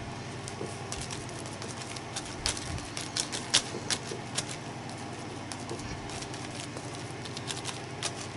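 A cosmetic sponge dabbed with paint through a stencil onto a paper journal page: a run of soft, irregular pats and light clicks, thickest a few seconds in.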